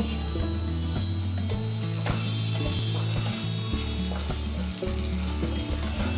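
Diced potatoes sizzling in oil in a non-stick wok, with a wooden spatula stirring and scraping them now and then.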